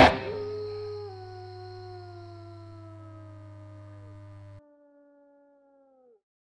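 After the song's final hit, sustained electric guitar tones ring out and slowly slide down in pitch, each bending sharply downward as it drops away. A low amplifier hum sits under them and cuts off suddenly a little over four seconds in.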